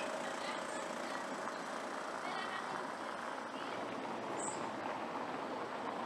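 Steady outdoor town ambience, mostly a distant traffic hum, with a few faint short high-pitched calls in the first half and a brief high chirp about four and a half seconds in.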